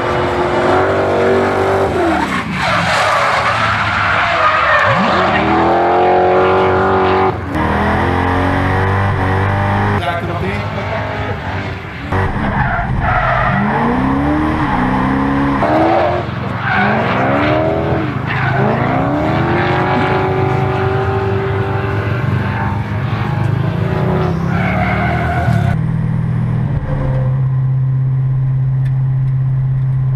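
A V8-engined BMW E46 M3 drift car revving hard through a drift, its engine pitch sweeping up and down again and again over the hiss of spinning, skidding tyres. Near the end the sound changes to a steadier, low engine drone.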